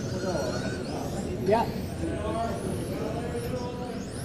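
Electric 1/10-scale RC touring cars running on the track, their motors whining high and rising and falling as they accelerate and pass, over a bed of background voices.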